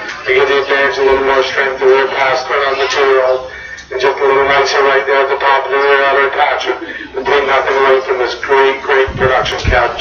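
Talking over a public-address system, with music mixed in, pausing briefly a few seconds in.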